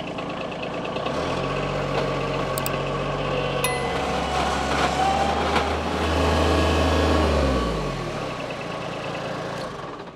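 Bobcat MT85 mini track loader's engine running as the machine drives, the engine note strengthening about a second in and sliding down and dropping away near the end as it slows.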